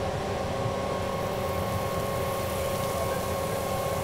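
Volvo FMX forest fire tanker's engine and water pump running steadily. A fire-hose jet hisses over the steady hum.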